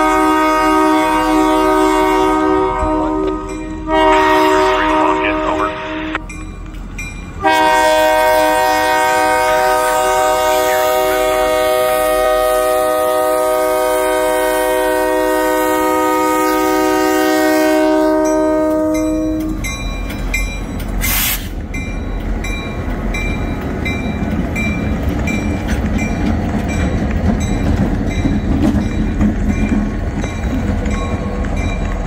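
Union Pacific diesel locomotive's air horn sounding a long chord blast, a brief break, then a second long blast that ends about twenty seconds in, the warning for a road grade crossing. Then the locomotives' engines rumble and the wheels clatter as they pass close by, with a short burst of hiss soon after the horn stops.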